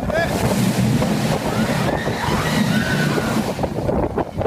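Rush of wind across a phone microphone on a fast-moving roller coaster, loud and steady, with riders yelling over it.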